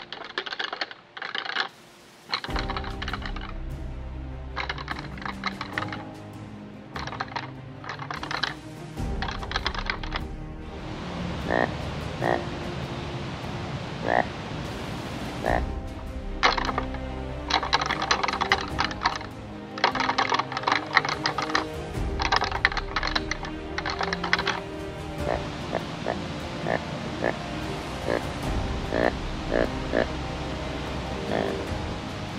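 Synthetic rattling antlers (Illusion Systems Black Rack) clacked and ground together in repeated bursts of sharp clicks, a rattling sequence that imitates two young bucks fighting, heard over background music.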